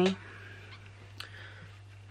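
Quiet room tone over a steady low electrical hum, with a single faint click about a second in.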